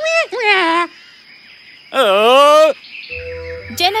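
Cartoon monkey calls: quick wavering hoots in the first second, then one long rising-and-falling call about two seconds in, as the monkey teases.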